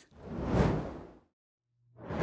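Whoosh transition sound effect swelling and fading over about a second, then a short gap of dead silence before a second whoosh begins near the end.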